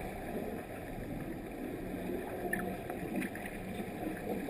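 Steady, muffled underwater noise of a swimming pool picked up by a submerged camera, with water churned by swimmers' fins close by.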